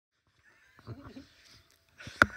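A faint, brief vocal sound about a second in, against near silence.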